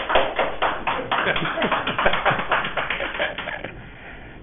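Audience applauding: a burst of clapping that dies away near the end.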